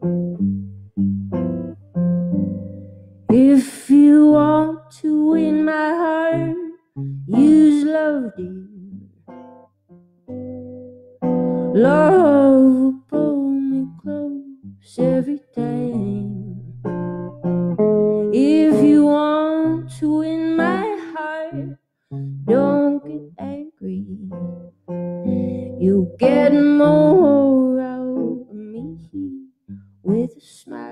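A woman singing a slow song in several phrases to her own electric guitar, picked notes carrying on alone between the sung lines.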